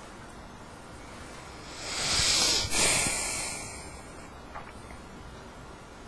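A deep breath: a hissing rush of air lasting about two seconds, in two parts with a short break in the middle, followed a little later by a faint click.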